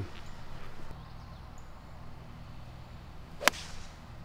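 A six iron striking a golf ball off the tee about three and a half seconds in: one sharp click, the loudest sound, over a faint steady low hum.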